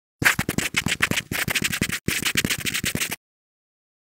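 Pen scratching across paper in quick scribbling strokes, in two runs with a short break about two seconds in, stopping about three seconds in.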